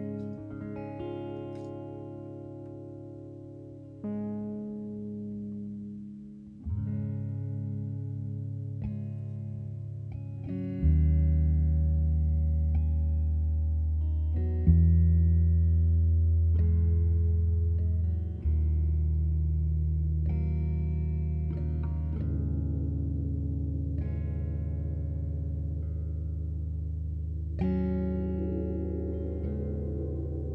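Slow instrumental live band music: sustained chords struck every few seconds and left to ring out, growing louder with deep low notes from about eleven seconds in.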